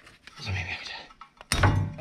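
Parking-brake cable end popping free of its bracket with a sharp clunk about one and a half seconds in, after a struggle to release its spring-locking tabs.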